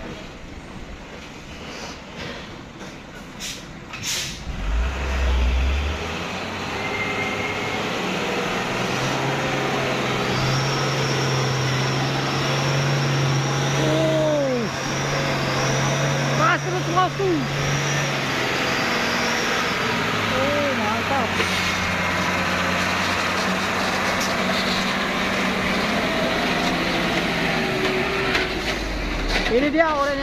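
A truck engine running: its note climbs and holds steady for several seconds with a thin high whistle over it, then drops to a lower steady note about two-thirds of the way through. Voices are heard faintly in the background.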